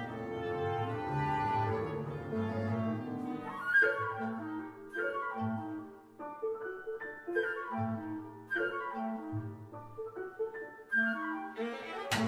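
Chamber ensemble of flute, B♭ clarinet, piano, viola and double bass playing a soft, rhythmically irregular contemporary passage. Held lines fill the first four seconds; after that come short detached notes and small flourishes with gaps between them, the strings plucking pizzicato.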